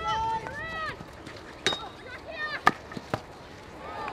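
Sharp cracks of field hockey sticks striking the ball on an artificial turf pitch: three hits, the loudest about two and a half seconds in, with players shouting calls around them.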